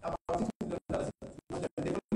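A man speaking into microphones, with the audio cutting out to silence about four times a second, so the speech comes through in short choppy pieces.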